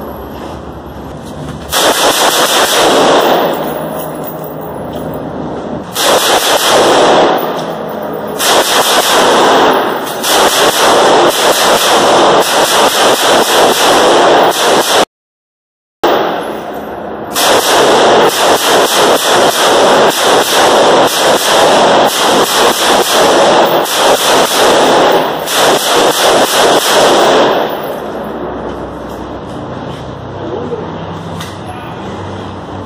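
AR-15 rifles in .223 firing rapid strings of shots, several strings in a row, each string dying away in an echo. The shooting drops out to silence for about a second midway.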